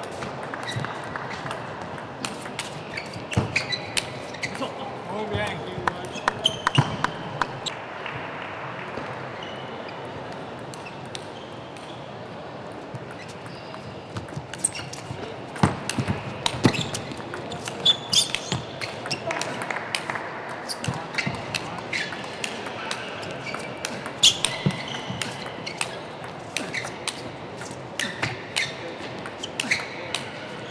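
Table tennis rallies: the celluloid ball clicking off rackets and table in quick runs, one run of rallying in the first few seconds and a longer, denser one through the second half, over background voices.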